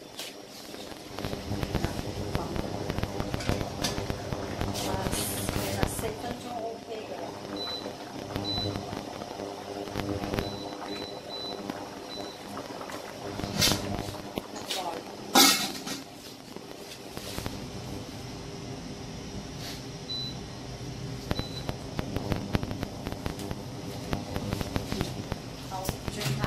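Kitchen sounds around cookware on an induction hob: a steady hum under a few sharp clanks of metal pans and lids, the loudest about fifteen seconds in, with several faint short high beeps.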